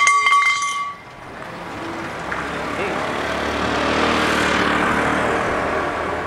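A short steady horn toot, then a motor vehicle passing on the street. Its noise swells to a peak about four seconds in and fades away.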